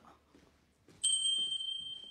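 A single high bell chime struck about a second in, its clear tone ringing on and fading slowly.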